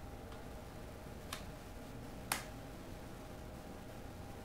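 A few separate computer keyboard keystrokes: a faint click, then two clear clicks about a second apart, the second louder. A faint steady hum lies underneath.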